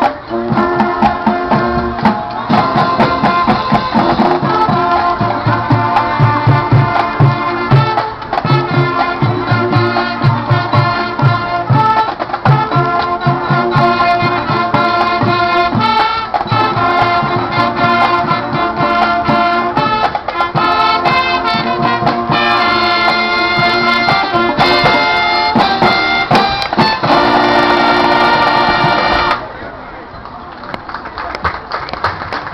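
High school marching band, brass with sousaphones and drums, playing a number in full. The band holds a final chord and cuts off sharply shortly before the end.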